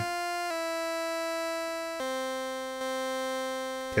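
Moog Subharmonicon's analog oscillators holding a sustained synth tone that steps down in pitch a few times. This is heard as a sequencer step that was set too high is turned down.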